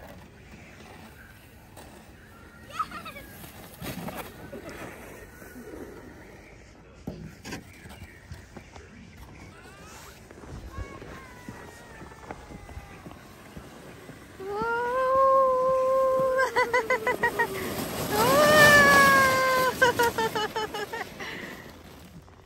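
High-pitched squeals of excitement from someone sliding down a snowy hill on a sled: one long held cry about two-thirds of the way in, a fast choppy stutter, then a second cry that rises and falls toward the end.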